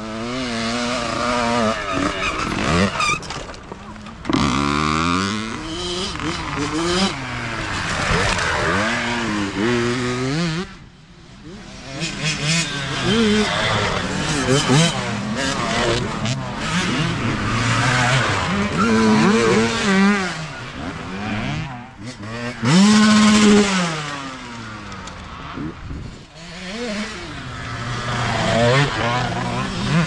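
Several dirt bikes passing one after another on a trail, each engine rising and falling in pitch as the rider revs through the gears and goes by. The loudest pass comes about 23 seconds in.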